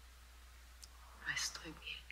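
A person's whispered, breathy speech, brief, about a second and a half in, over a steady low hum.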